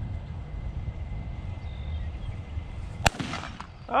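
A single shotgun shot about three seconds in, sudden and sharp with a short echo trailing after it, over a low wind rumble on the microphone.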